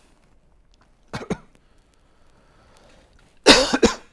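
A man coughing: a short double cough about a second in, then a louder burst of several coughs near the end.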